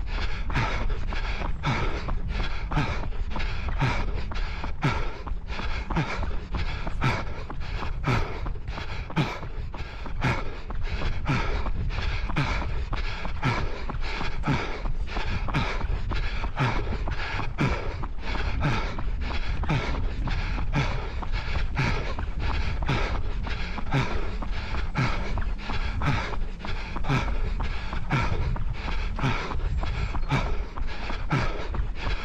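A runner's footfalls at a steady rhythm of about three strides a second, with his breathing, during a 5 km race run.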